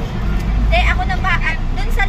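Steady low engine and road rumble heard from inside a moving vehicle's cabin, with a voice speaking briefly in the middle.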